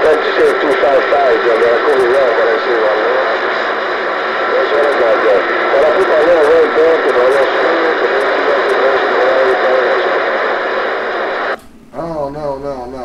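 A distant station's voice coming in over a CB radio, buried in heavy static and noise, its pitch wavering and the words hard to make out. The signal cuts off suddenly near the end.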